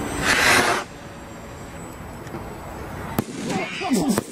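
Aerial firework going off in the sky: a loud hiss in the first second, then a single sharp crack about three seconds in.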